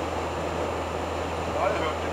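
Steady engine drone and road noise inside the cab of a 1985 Fiat Ducato-based Hobby 600 motorhome cruising at about 72 km/h, with a low hum under a broad rushing noise.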